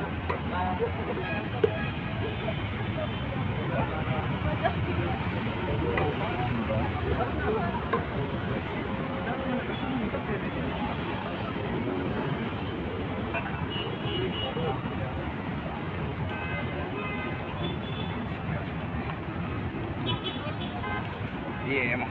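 Busy city street ambience: steady traffic noise from cars and motorbikes on the road, with passers-by talking nearby.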